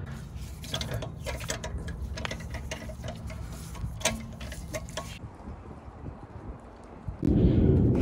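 Scattered light metallic clicks and taps as an alloy wheel is hung back on a car's hub and its lug bolts are started by hand, over a low steady hum. Near the end a louder low rumble comes in.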